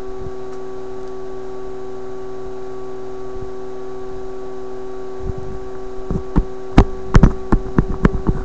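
Steady hum of several fixed tones from the running Philips 922 tube radio's speaker, turned up. From about five seconds in, a run of irregular knocks and clicks joins it, loudest about seven seconds in.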